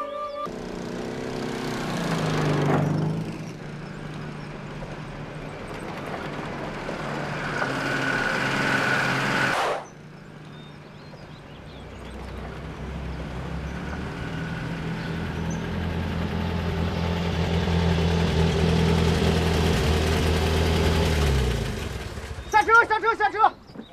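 Old army truck engines running as trucks approach. The engine note holds steady, then drops away near the end. Earlier, a vehicle passes with a falling pitch, and a rising rush of noise cuts off abruptly about ten seconds in.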